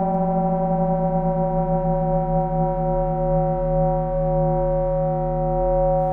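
A held synthesizer chord: several steady tones sustained without change, the closing sound of the podcast's outro music.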